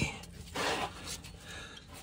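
A man's breath: one short, breathy exhale about half a second in.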